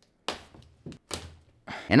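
Hands handling a rigid cardboard graphics-card box: a few short taps and knocks as it is turned and set down on a desk, with faint rubbing between them.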